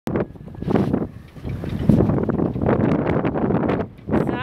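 Wind buffeting the microphone in uneven gusts, a loud low rumble that rises and falls.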